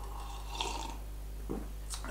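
Quiet sipping from a mug, with a short mouth sound about a second and a half in, over a steady low hum.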